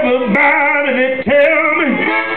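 Live blues band music with a high, wavering lead line over the band.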